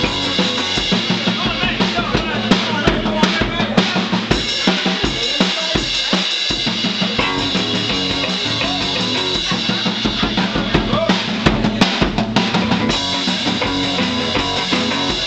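Live rockabilly band playing an instrumental passage without singing: a drum kit with snare, bass drum and cymbal driving a steady beat under a strummed hollow-body archtop electric guitar.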